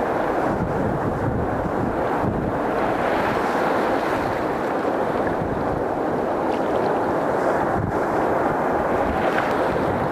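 Sea surf breaking and washing around rocks close to the microphone, a steady rushing with no pause, with wind buffeting the microphone.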